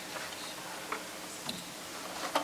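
Soft opening of a string and piano quintet: a few quiet, widely spaced plucked string notes, pizzicato, with long gaps between them.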